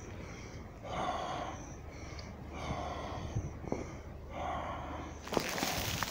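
A man breathing heavily as he walks, three breaths about a second and a half to two seconds apart. A louder rustling noise starts near the end.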